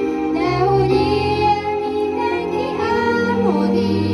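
A group of schoolchildren singing a song together into microphones, amplified through a PA, over an accompaniment of long held low notes.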